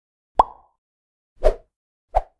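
Two short pop sound effects from an animated logo intro, about a second apart.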